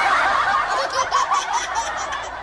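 Several people snickering and giggling together, the laughs overlapping and tapering off toward the end.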